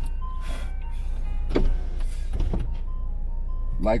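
Steady low hum inside a stationary car's cabin, with faint thin tones and two brief soft clicks, about a second and a half and two and a half seconds in.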